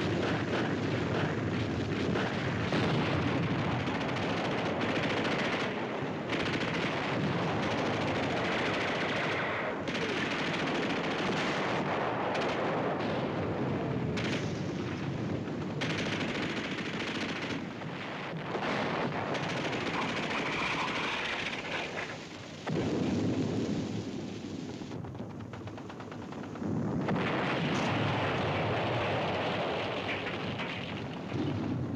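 Battle sound effects: sustained machine-gun and rifle fire with artillery explosions, heavy throughout with brief lulls, and falling whistles near the start and about halfway through.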